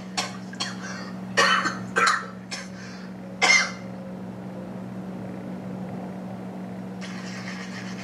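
Several short, breathy bursts of a person's voice, about six in the first four seconds, over a steady low hum. After that only the hum remains.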